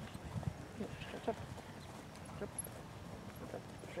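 Hoofbeats of a grey horse trotting on sand arena footing, soft knocks with a word of coaching between them.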